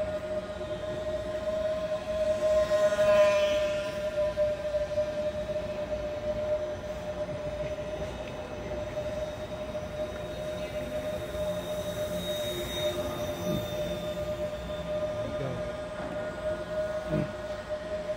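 Twin 10 mm brushless motors and propellers of a small foam twin-engine RC warbird in flight: a steady high whine, swelling louder about two to four seconds in as the plane passes close.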